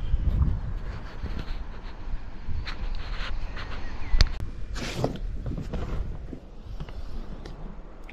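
Wind rumbling on a handheld camera's microphone, with scattered handling knocks and one sharper knock about halfway through, as the camera is held out and lowered toward the water.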